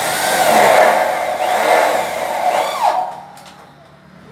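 A loud burst of power-tool noise that starts abruptly, runs for about three seconds and cuts off suddenly.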